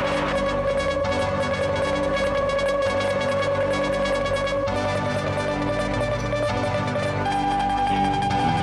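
Live rock band's electric guitars sustaining droning held notes, with a high steady tone on top that steps up in pitch near the end.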